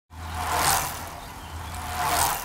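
Intro-sting sound effect: a rushing whoosh over a steady low rumble, like a vehicle passing by, swelling to a peak under a second in and building again near the end.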